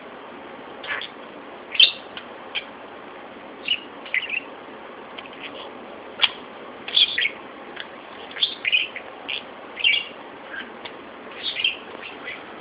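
Budgerigar chirping: short, sharp chirps roughly every second, over a steady hiss.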